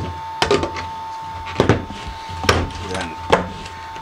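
Sharp plastic knocks and clicks, a quick cluster and then one about every second, as the lid is pressed back down onto the emulsion bucket to seal it.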